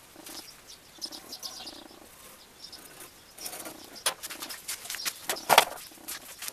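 Irregular light clicks, clinks and scrapes of metal parts being handled, with a louder knock about five and a half seconds in.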